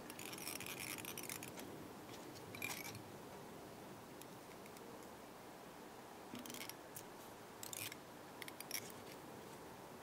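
Quiet handling noises of fly tying: soft rustles and light scrapes of foam and tying thread worked between the fingers, in a few short bursts, the longest in the first second or so.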